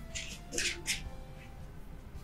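Faint background music with a few steady held tones. Three short hissing sounds come within the first second.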